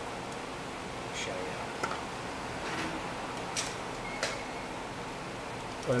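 A few scattered clicks from a ratchet as a brake caliper bolt is tightened, over a steady background hiss.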